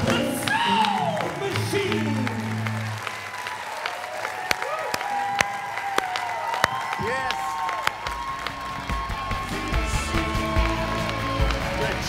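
Live band playing with electric guitar, bass and drums, heavy low notes coming in from about two-thirds of the way through, mixed with audience applause.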